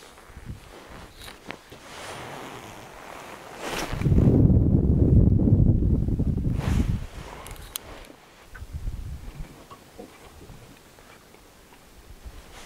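Wind buffeting the microphone in a loud low rumble for about three seconds, starting about four seconds in, with small knocks and rustles of handling in a boat before and after.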